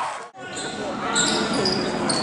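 Basketball game sound in a gym. After a brief dropout near the start, sneakers squeak on the hardwood floor in short high-pitched squeals and players and spectators call out.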